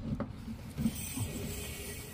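Small metal clicks and rattles of a folding hex key set being handled and fitted into a mini-split's brass service valve, with a faint high hiss from about a second in.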